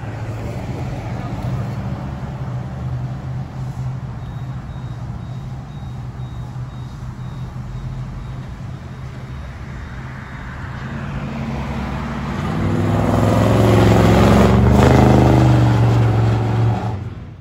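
Cars running along a street, with a steady low engine hum throughout. A car grows louder from about twelve seconds in and passes close, loudest near the end.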